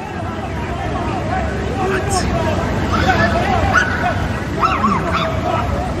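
Several men shouting over one another in a scuffle, short sharp yells against a babble of voices.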